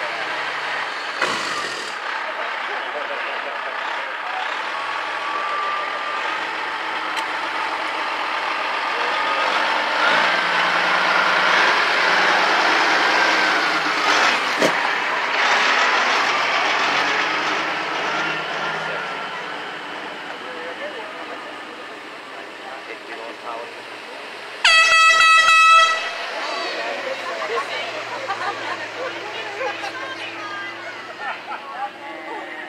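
Vehicles of a slow convoy rolling past, with voices around them. About 25 seconds in comes a single vehicle-horn blast about a second long, the loudest sound here.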